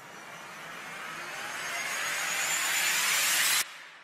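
A rushing riser sound effect: a whoosh of noise that grows steadily louder for about three and a half seconds, then cuts off suddenly and leaves a short fading tail.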